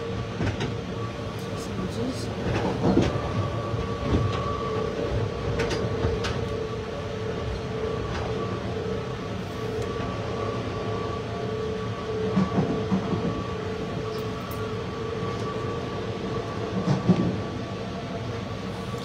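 Steady running noise inside a passenger train carriage: a continuous rumble with a steady hum and a higher whine held throughout, and occasional faint clicks.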